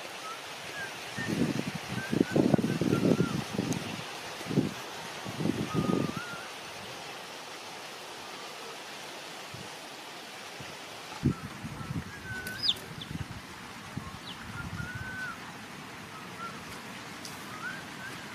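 Small birds chirping on and off, short calls that bend up and down in pitch. Louder low rustling and knocking noises come in clusters in the first few seconds and again around the middle.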